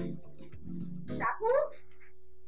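Background music that stops about a second in, followed by a dog's short, high yelping bark, the loudest sound here.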